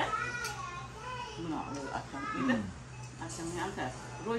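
Voices talking, among them a toddler's voice, over a steady low hum.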